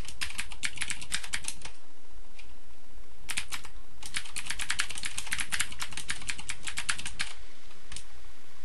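Typing on a computer keyboard: a quick run of keystrokes, a pause of about a second and a half with a single stray key, then a longer run that stops shortly before the end.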